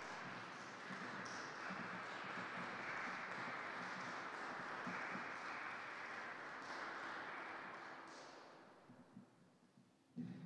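Audience applause: steady clapping that dies away over the last couple of seconds.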